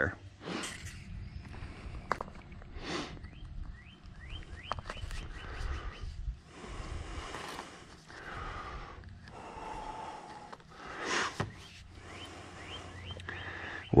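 Hands handling a PVC drain pipe and a rubber flexible coupling with steel band clamps in a soil trench: scattered rubbing and light knocks, with a run of short rising chirps a few seconds in and a louder knock about 11 seconds in.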